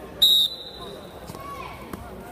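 Wrestling referee's whistle, one short high blast about a quarter second in, starting the wrestlers from the referee's position. Faint voices in the gym around it.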